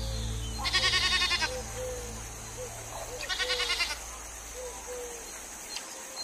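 A goat bleating twice, each a quavering call of just under a second, about two and a half seconds apart. Under it a low musical drone fades out, and soft short calls repeat faintly.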